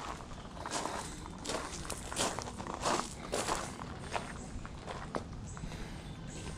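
Footsteps walking over gravel and brick paving, about three steps every two seconds, loudest in the middle of the stretch.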